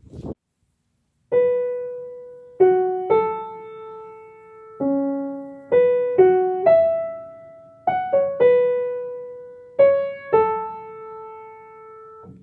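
Piano played one note at a time: a slow, simple melody of about a dozen single struck notes, each ringing and fading before the next, starting about a second in.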